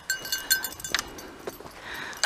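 Small bell on a dog's collar tinkling in short, faint rings as the dog walks about, with a few light footfalls or knocks on dry ground.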